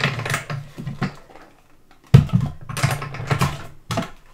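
Cutting plates being run through a small white die-cutting machine to punch out a card-making die, with plastic clicking and clattering. After a short pause about two seconds in, a sudden loud clack and more rattling as the plates come out of the machine.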